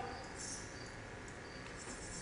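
Faint insect chirping, short high chirps repeated several times: a theatre sound effect of grasshoppers.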